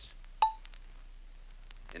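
A single short beep about half a second in: the audible cue on a filmstrip soundtrack that tells the operator to advance to the next frame. A few faint clicks follow over a low hum.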